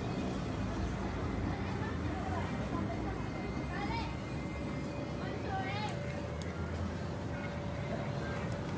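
A steady low rumble with faint, distant voices in the background.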